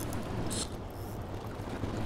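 A fishing boat's motor running steadily at low trolling speed, with water washing around the hull; a brief hiss about half a second in.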